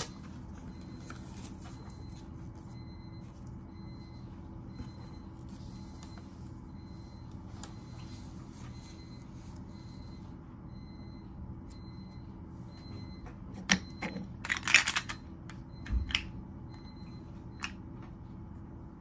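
Small toy pieces and wrapping handled on a table, with a few clicks and a short crinkling rustle about three-quarters of the way through. A faint, high electronic beep repeats about twice a second in the background.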